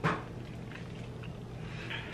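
A short breathy huff of breath right at the start, then quiet room tone with a steady low hum, a few faint small clicks and a soft hiss near the end.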